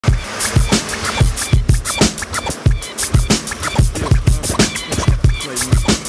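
Hip hop beat with deep booming kick drums and crisp hi-hats, the instrumental intro of a rap track before the vocals come in.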